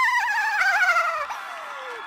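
A woman laughing: one high, warbling laugh that slides steadily down in pitch and fades out about halfway through.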